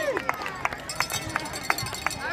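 Scattered hand clapping from a small crowd, a few sharp claps about three a second, as the tail of a shouted cheer dies away at the start; voices chatter in the background.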